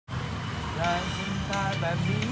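A young man's voice singing a few short phrases of a pop song unaccompanied, over a steady low hum.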